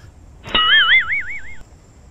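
A cartoon 'boing'-type sound effect: a warbling tone that starts with a click about half a second in, its pitch swinging up and down about four times over roughly a second before it stops.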